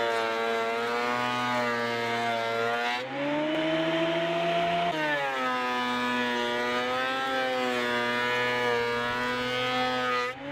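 Portable benchtop thickness planer running under load as it planes a weathered, cracked pine post, its motor giving a steady whine with chip noise; the owner says its knives are nicked and shot. About three seconds in the pitch rises for roughly two seconds, then drops back.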